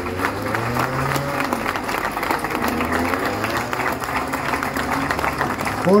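An outdoor audience applauding steadily, with a few voices mixed in underneath, stopping as the speaking voice resumes at the end.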